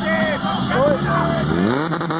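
Portable fire-pump engine running, revving up sharply near the end as it is pushed to send water down the hoses. Shouting voices over it.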